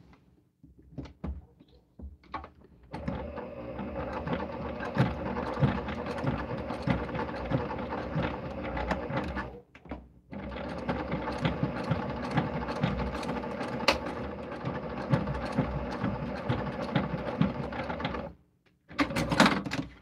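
Domestic electric sewing machine stitching in two steady runs of several seconds each, with a short pause between them, sewing back and forth over the same line to lock a fabric handle down. A few light clicks of fabric and machine handling come before it starts.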